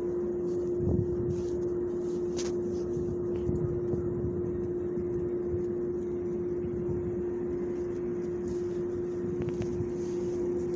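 A steady droning machine hum holding one pitch, over a low rumble, with a soft thump about a second in.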